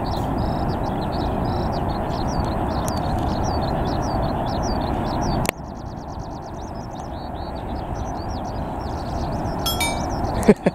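Outdoor ambience: a steady low rumble with small birds chirping over and over high above it. The rumble drops suddenly to a lower level about halfway through, and the chirping grows quicker and denser.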